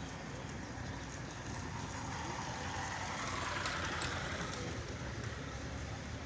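A small motorcycle riding past on a cobblestone street, its engine and tyre noise building to a peak about three and a half seconds in, then fading.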